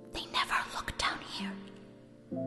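A girl's voice whispering a short reply, breathy and without voiced tone, for about the first second and a half, over soft sustained background music notes.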